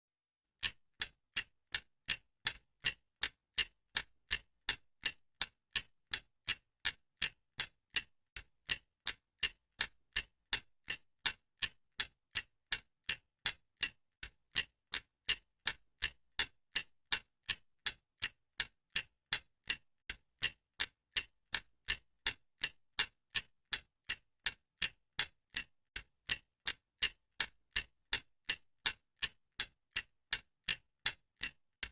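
Steady, even ticking, a little over two sharp ticks a second with silence between them, like a clock or metronome.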